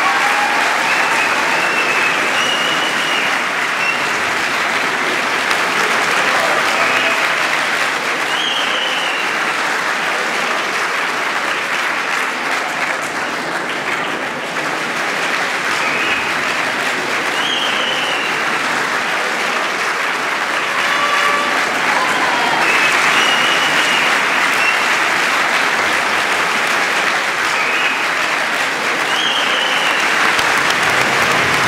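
Sustained audience applause filling a large amphitheatre, steady throughout, with a few short high-pitched cheers rising above it every several seconds.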